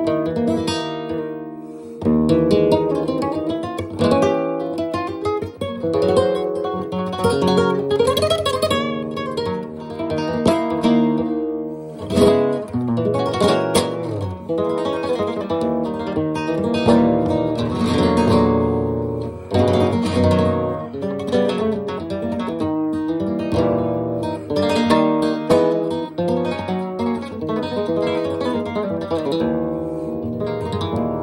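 Solo nylon-string flamenco guitar playing a soleá, mixing picked melodic passages with strummed chords. A cluster of sharp strums comes around the middle.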